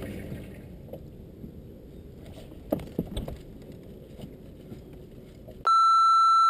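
Low background of a boat on open water, with a few light knocks from the hull or gear. Near the end comes a loud, steady electronic beep about a second long that cuts off abruptly.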